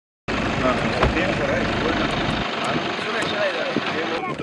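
Field audio of several people talking at once, cutting in abruptly just after the start, over a low rumble that stops about two and a half seconds in.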